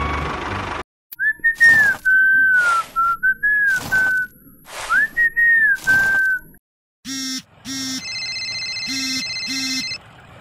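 A person whistling a tune over broom strokes swishing on sand, about one stroke a second. From about seven seconds in, a mobile phone ringtone plays in repeating beeps.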